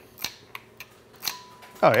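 A small 12-volt solenoid firing a 3D-printed pop-bumper actuator: several short sharp clicks, the strongest just over a second in, as the plunger snaps the disc down. The test works much better than the try before.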